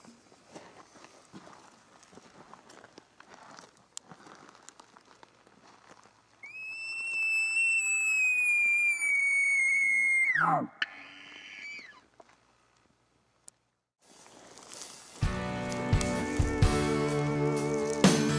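An elk bugle: one long high whistle held for about four seconds, sagging a little in pitch, then sliding steeply down, after faint rustling. About three seconds before the end, country music with guitar starts.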